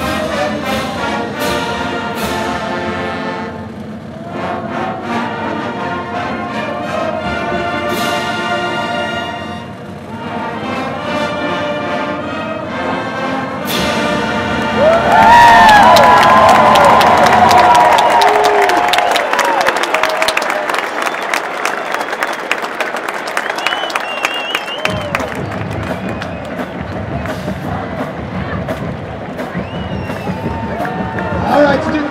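Marching band playing a brass piece with sharp crashes, heard from high in the stands. It ends about halfway through, and the stadium crowd breaks into loud cheering, yelling and applause that slowly dies down.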